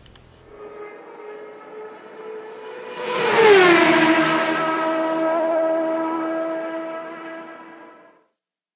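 Produced outro sound effect: a pitched, engine-like tone swells up, peaks about three seconds in with a bright whoosh as its pitch glides down, then holds a steady lower tone before fading out at the end.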